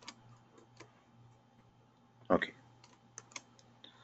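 A few separate computer keyboard keystrokes and clicks, spaced out, as copy-and-paste shortcuts are pressed.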